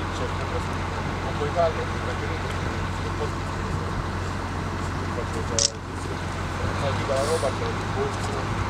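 Steady outdoor background noise, a low hum with hiss, with faint snatches of a voice now and then and a single short click about five and a half seconds in.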